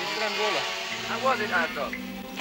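Men's voices talking, the words unclear, over the steady drone of a go-kart engine.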